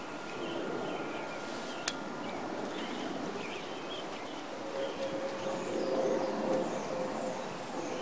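Backyard outdoor ambience: a steady background hiss with faint bird chirps, a faint steady hum in the second half, and a single sharp click about two seconds in.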